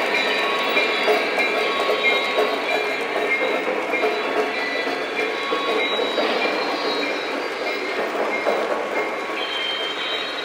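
Lionel O-gauge GP35 model diesel locomotives running with a freight train on three-rail track: a continuous rolling rumble of wheels on the rails with a steady whine, easing slightly toward the end.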